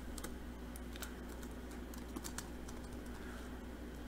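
Faint computer-keyboard keystrokes: scattered single key clicks over a low, steady hum.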